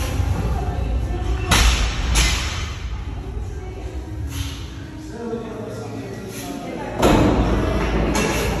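Heavily loaded steel-frame push sled being shoved across a concrete floor, giving a low scraping rumble, with two heavy thumps: one about a second and a half in and a louder one near the end.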